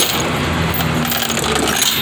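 A single sharp metallic clack from the tie-down strap hardware as the car is strapped to the flatbed, over the steady running of the idling tow truck engine and freeway traffic.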